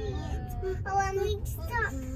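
A child singing a few held notes over the steady low road rumble inside a moving car.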